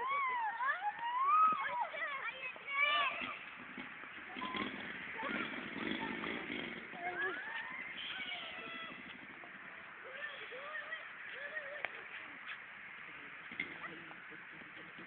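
Children shouting and calling out to each other while playing outdoors, the loudest high-pitched yells in the first three seconds, then fainter overlapping voices and scattered calls.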